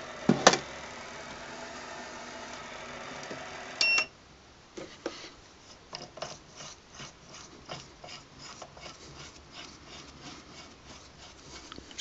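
Sangmutan 1100 W DC spindle motor on a mini mill running steadily at low speed with a hum. About four seconds in, the controller beeps and the motor stops quickly, leaving faint scattered clicks and rubbing.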